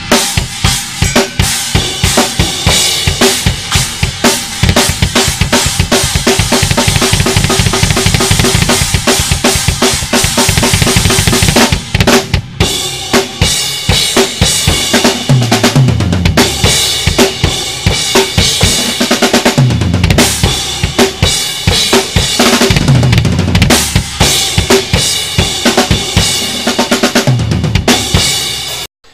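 Acoustic drum kit with Soultone cymbals played hard and fast, with bass drum, snare and bright, loud cymbal crashes. It stops briefly about twelve seconds in, and three times later a fill steps down the toms.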